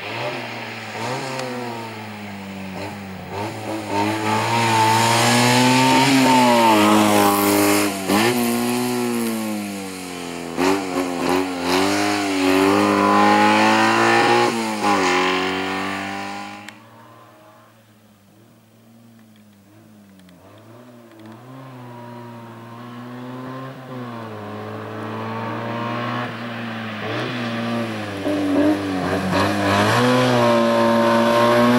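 Fiat 126-based slalom race car's engine revving hard, its pitch rising and falling again and again as the car accelerates and lifts through the cone chicanes. A little over halfway through, the sound drops away suddenly, then builds steadily as the car approaches again.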